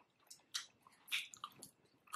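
A person eating pizza crust: faint chewing and biting, heard as a few short, crisp clicks and crunches.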